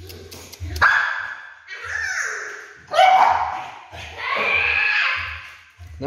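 A small dog barking about four times, the last call longer and drawn out.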